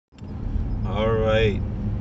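Steady low hum and rumble of a car, heard from inside the cabin, with a man saying a single word about a second in.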